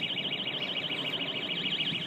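An electronic alarm sounding steadily, its high-pitched tone warbling up and down many times a second.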